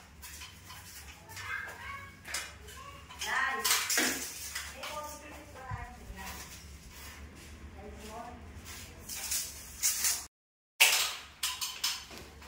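Faint, indistinct speech with light metallic clinks and taps from a tape measure and hand tools being handled. The sound cuts out for half a second near the end, then a few sharper clicks follow.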